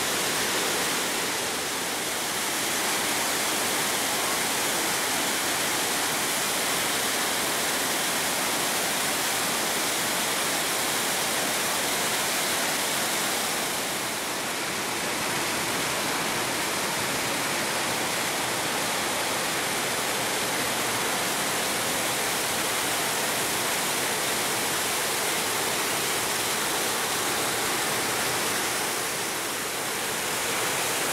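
Trümmelbach Falls, glacial meltwater plunging through a gorge inside the rock, making a steady, dense rush of falling water and spray. It dips slightly a couple of times, once near the middle and once near the end.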